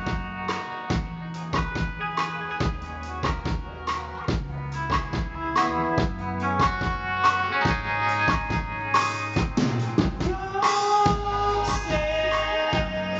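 Live band playing an instrumental passage: a drum kit beats a steady rhythm under held guitar and keyboard chords, with no singing.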